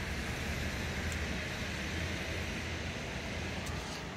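Steady city street background noise: a continuous rumble and hiss of traffic with no distinct events.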